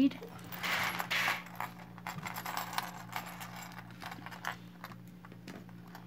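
Metal necklace chains clinking and jingling as they are handled, with a loud cluster of clinks about a second in and lighter scattered ticks after.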